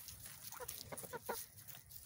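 Chickens clucking softly, several short, faint clucks spread across a couple of seconds as the flock moves about.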